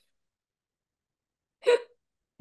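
Dead silence, then a single short laugh near the end.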